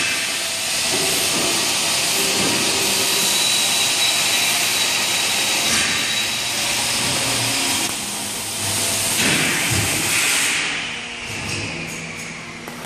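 A loud, steady hiss of rushing air, with a faint thin whistle-like tone from about three to six seconds in; the hiss dies down after about ten and a half seconds.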